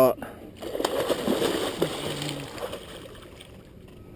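Water splashing and sloshing, loudest in the first half and fading away toward the end.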